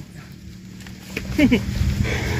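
Motorcycle engine idling, a steady low hum with a low rumble that swells near the end, under a single spoken word.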